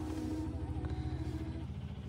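Car cabin noise: the engine running with a fast, even low throb, with a faint song from the car stereo on top during a quiet stretch of the music.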